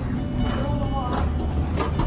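Steady low rumble of a vehicle running, with music and a faint voice over it.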